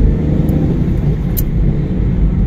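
Steady low rumble of a car being driven, the engine and road noise heard from inside the cabin, with a couple of faint clicks.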